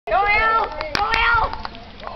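A high-pitched voice calls out twice, the first call longer, with two sharp clicks about halfway through.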